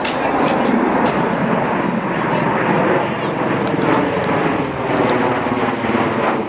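Bell Boeing MV-22B Osprey tiltrotor flying overhead: a loud, steady drone of its proprotors and turboshaft engines.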